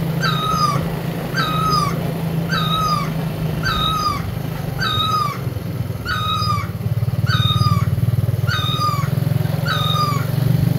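A motorcycle engine running with a steady low hum, under a high squeaky call that repeats evenly about once a second and stops near the end.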